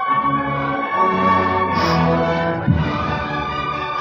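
Brass band playing a slow processional march with long held chords, and a low thump about two-thirds of the way in.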